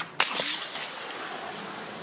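A single sharp crack a moment in, followed by about a second of hissing noise that fades into steady outdoor background.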